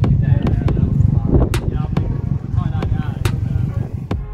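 Subaru Impreza WRX's turbocharged flat-four engine running with a low rumble through a large single aftermarket tailpipe, with sharp exhaust cracks and pops scattered throughout; people laughing over it.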